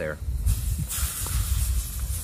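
Drops of water hissing on a hot cast iron skillet in a water test of the pan's heat, the pan almost hot enough. The hiss thins briefly, then comes back stronger about a second in, over a low rumble.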